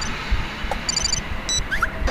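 Cartoon transition sound effect: quick, high electronic twinkles and bleeps that ring out about a second in and again shortly after, with two short rising blips near the end and a low thud early on.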